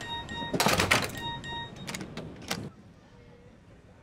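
A mobile phone's message alert: a short electronic tone sounds twice over busy background noise with knocks and murmured voices. The background cuts off about two and a half seconds in, leaving quiet.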